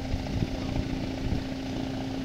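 Distant hovercraft engine and fan droning as a steady hum across the water, over an uneven low rumble.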